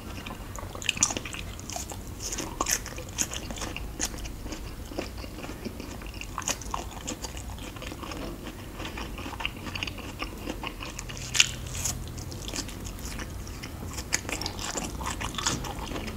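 Close-miked biting and chewing of luk chup, Thai mung bean sweets in a gelatin coating: sharp wet clicks and smacks come in clusters, the sharpest a little past halfway.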